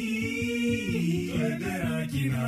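Music: a song with a sung vocal melody moving in held, stepped notes.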